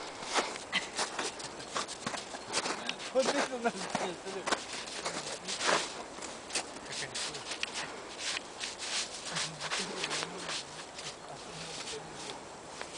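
Snow crunching in many short, crisp steps and scuffs as a dachshund walks about and pushes its nose into the snow to bury a cookie.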